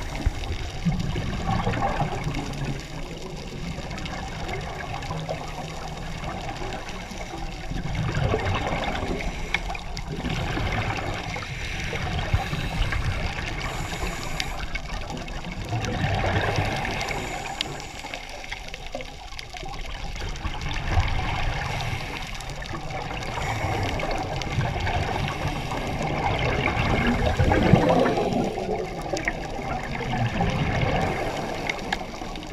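Scuba diver's breathing heard underwater: exhaled bubbles from the regulator gurgling and rushing in slow swells every several seconds.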